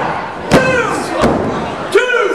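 A referee's hand slapping the wrestling ring mat for a pinfall count, three sharp slaps about 0.7 s apart, each followed by voices shouting the count.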